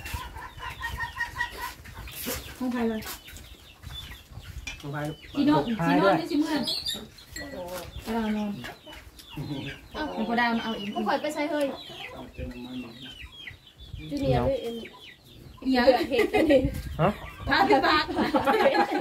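Chickens clucking close by, mixed with people chatting over a meal.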